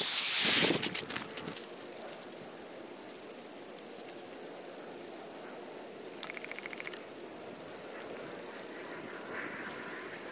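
Shelled corn pouring out of a sack onto dry leaf litter, a loud hiss of kernels that stops after about a second and a half. It is followed by quieter rustling of dry leaves underfoot, with a few faint clicks and a short fast rattle a little after the middle.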